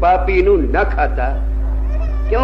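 A man's voice preaching, drawing out a word with a pitch that slides down and back up, then trailing off, over a steady low hum.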